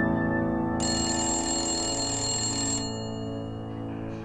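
An old bell telephone ringing, one continuous ring lasting about two seconds, over soft piano music.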